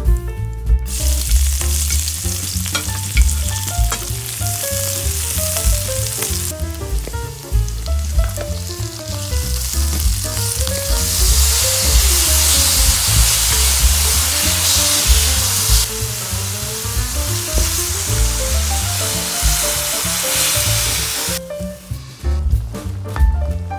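Food sizzling in a hot pan as it is stir-fried, a steady loud hiss that eases about six seconds in and builds again, with background music underneath.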